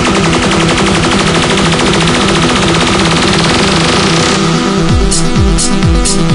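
Live electronic tech house music. A rapid stuttering roll and a rising noise sweep build over a repeating synth bass line. About four and a half seconds in, the build drops into a steady four-on-the-floor kick drum with offbeat hi-hats.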